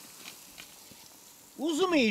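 Quiet outdoor background with a few faint ticks, then a high-pitched voice starts speaking about a second and a half in.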